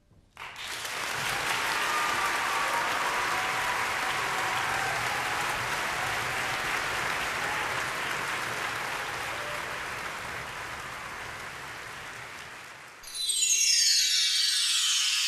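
Audience applauding in a concert hall, starting suddenly and slowly dying away. About a second before the end, a bright, shimmering musical sting sweeps in.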